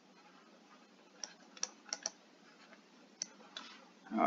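Stylus tapping and clicking on a tablet screen during handwriting: about half a dozen faint, sharp taps at irregular intervals, mostly in the middle seconds.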